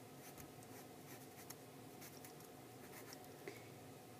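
Faint scratching of a Sharpie permanent marker on sketchbook paper, colouring in an area with many quick short strokes.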